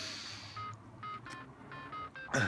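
A run of about six short, high pips in quick succession, each a single steady note, faint.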